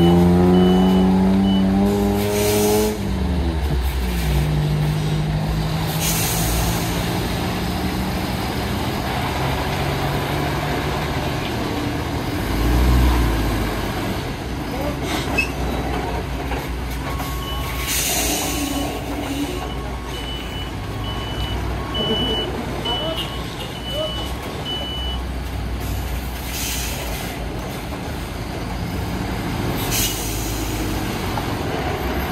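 Heavy MAN tractor unit pulling a loaded low-loader on a steep hairpin: its diesel engine revs up and drops back in the first few seconds, then keeps running under load. A reversing alarm beeps about twice a second at the start and again in the second half, and air hisses out in short bursts four times.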